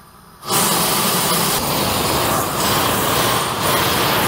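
Harbor Freight propane torch (item 91037) firing at full blast with its turbo trigger open, a loud, steady rushing of propane flame like a jet afterburner. It starts suddenly about half a second in.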